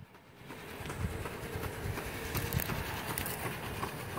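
Wind buffeting a phone microphone, an irregular low rumble over a steady background hiss.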